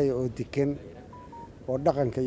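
A man speaking into a microphone breaks off, and in the pause two short electronic beeps sound about a second in, the second slightly lower than the first, before his speech resumes.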